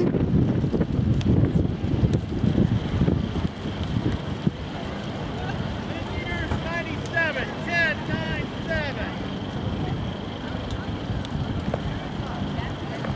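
Wind buffeting the microphone, heaviest in the first few seconds, over the chatter of people around a track; a few short raised voices come through about halfway in.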